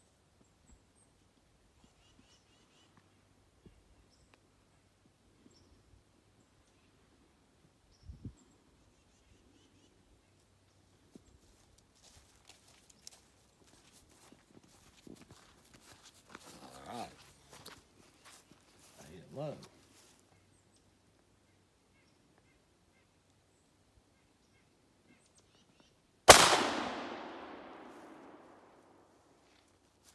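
A single shot from a Lanber 12-gauge double-barrelled shotgun near the end, by far the loudest sound, its report echoing away over about two seconds.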